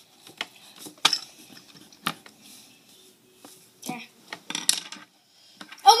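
A few sharp, light clicks and knocks of small objects being handled, spaced about a second apart, between quiet stretches.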